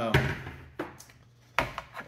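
Hard plastic hard hats knocking on a wooden tabletop as they are moved and set down: a knock just after the start, a faint one near the middle and a louder one near the end.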